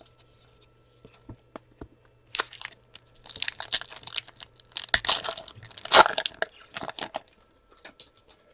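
A foil trading-card pack wrapper being torn open and crinkled by hand, in a run of ripping and crackling that is loudest about five to six seconds in. A few light clicks of cards being handled come before it.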